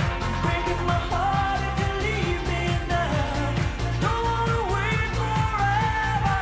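Pop-rock song performed live: a lead vocal singing long held notes over a full band with a steady drum beat.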